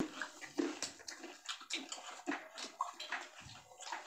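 Quiet, irregular clinks and rustles of people eating: a spoon and fingers on plates and bowls.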